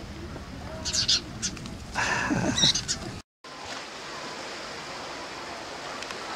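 House sparrows chirping, with a short burst of a voice about two seconds in; after a brief cut, a steady wash of small waves lapping at a shore.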